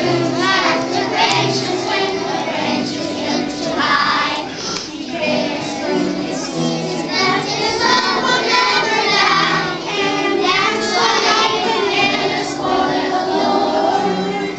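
A group of preschool children singing a song together.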